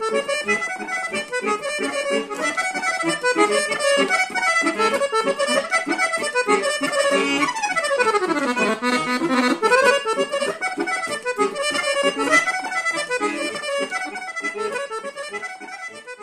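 Chromatic button accordion played solo, a fast, densely ornamented melody in Bulgarian folk style. About halfway through, a quick run sweeps down from high to low and then climbs back up.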